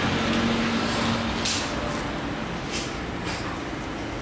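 TIG welding arc burning on a steel pipe joint as filler rod is fed in: a steady hiss with a low hum that fades about a third of the way in, and a few short clicks near the middle and end.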